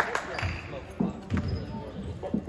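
A basketball being dribbled on a hardwood gym floor, about three bounces with short low thuds.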